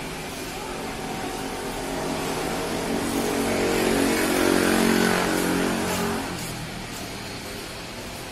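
A motor vehicle engine running nearby, growing steadily louder for a few seconds and then fading away.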